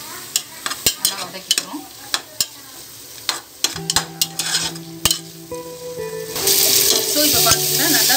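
A metal spoon scraping and clinking against an aluminium pressure cooker as onions and tomatoes are stirred in hot oil, which sizzles. The sizzling grows louder about six seconds in.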